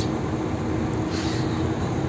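Road and engine noise inside a Mercedes Sprinter van's cab at highway speed: a steady low rumble with a faint hum, and a short hiss just after a second in.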